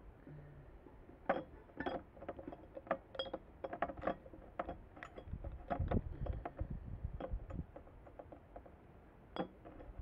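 Plastic syringe knocking and clinking against a glass jar: a run of light, irregular clinks and taps over several seconds, then one more near the end.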